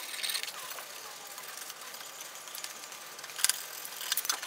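Hand scraping and wire-brushing of rust and old paint off a Honda Super Cub 90's steel luggage carrier, a dry metal-on-metal scratching. A few quick strokes come at the start, it is quieter in the middle, and one sharp scrape comes about three and a half seconds in.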